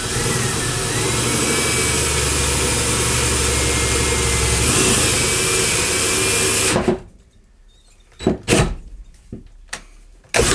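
Cordless drill boring a hole through plywood with a large bit, held square so both cutting edges bite, running steadily with a slightly wavering whine. It stops suddenly about seven seconds in, followed by a few light knocks.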